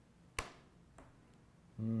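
A single sharp click of a computer keyboard key being pressed, followed about half a second later by a much fainter click, in an otherwise quiet room.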